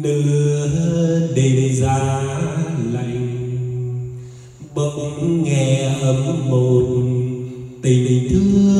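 A man sings a slow ballad unaccompanied into a karaoke microphone, amplified through a Jarguar PA-506XG karaoke amplifier with built-in echo and played over BMB CSD-2000C speakers. He holds long notes in two phrases, with a brief break about four and a half seconds in.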